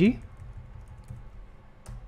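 A few quiet keystrokes on a computer keyboard as code is edited, scattered faint clicks with one sharper click near the end, over a low steady hum.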